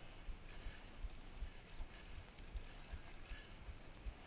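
Mountain bike rolling along a dirt road, heard from a handlebar-mounted camera: a steady rumble of tyres and wind with low thumps now and then.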